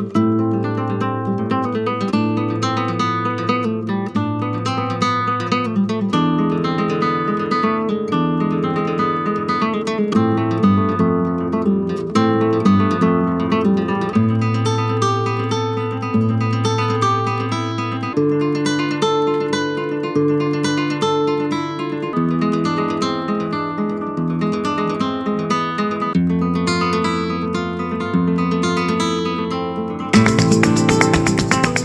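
Acoustic guitar music: quick plucked and strummed notes over bass notes that change about every two seconds.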